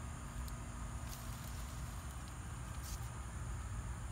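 Quiet outdoor ambience: a steady low rumble on the microphone under a faint, steady high hum, with two brief soft rustles, about a second in and again about three seconds in.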